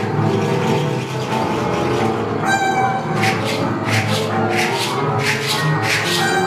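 Live improvised music: sustained pitched tones run throughout, and from about three seconds in they are joined by repeated bright percussion strokes with a jingling shimmer.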